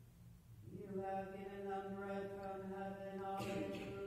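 Slow sung hymn with long held notes in a chant-like melody, the voices coming in about a second in.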